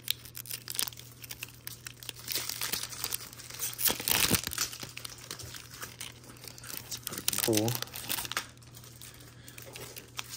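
Foil wrapper of a Topps baseball card pack crinkling and tearing as it is opened by hand, loudest about four seconds in. A brief vocal murmur comes about seven and a half seconds in.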